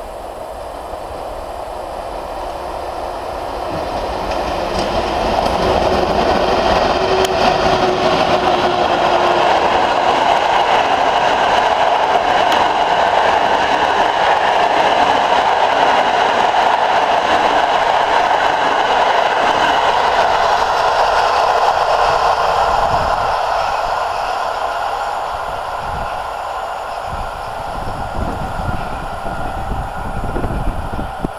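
EP07 electric locomotive and its train of passenger coaches passing at speed: the running noise of the wheels on the rails swells over about six seconds and holds loud for some fifteen seconds as the coaches go by. It then fades away as the train recedes.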